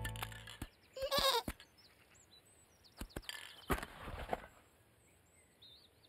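Cartoon sheep bleating once, a short wavering call about a second in, as music trails off. A few sharp knocks and a brief rattle follow around three to four seconds in, with faint bird chirps behind.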